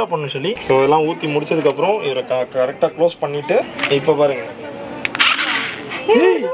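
A man talking, with a short hiss about five seconds in.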